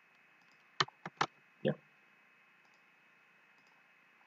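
Computer keyboard and mouse clicks: three quick, sharp clicks about a second in, then one duller click about half a second later, over a faint steady background hiss.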